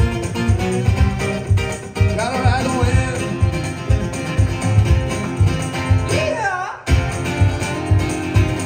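Live concert music: a male singer's voice over acoustic guitar with a steady beat. A little before the end the music cuts off abruptly and jumps to another passage of music.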